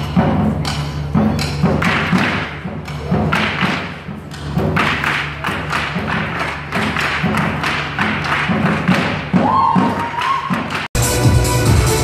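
Drums beaten in a fast, driving rhythm over loud backing music. About eleven seconds in, the sound cuts off and electronic dance music takes over.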